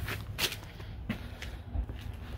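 Footsteps on concrete pavement, three steps about two-thirds of a second apart, over a low steady rumble.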